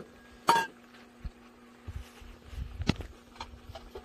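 Stainless steel bowls and tableware set down on a wooden table: a few sharp clinks and knocks, the loudest about half a second in and another near three seconds.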